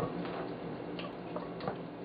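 A few faint, irregular light clicks and taps from hands working raw chicken pieces in a ceramic baking dish, over a low steady hum.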